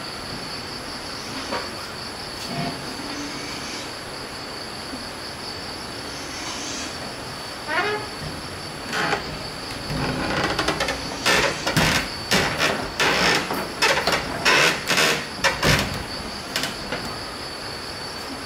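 Wooden doors being swung shut and latched, a run of sharp knocks, bumps and rattles from about ten to sixteen seconds in. A steady high-pitched whine runs underneath.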